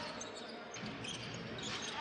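Arena sound of a basketball game in play: a basketball being dribbled on the hardwood court over a low crowd murmur.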